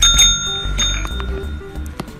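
A service call bell with a green dome, struck by a cat's paw: a bright ding right at the start and a second ding under a second in, each ringing on and fading.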